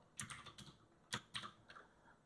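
Computer keyboard keys being typed, faint: a quick run of keystrokes just after the start, then a few single keystrokes about a second in.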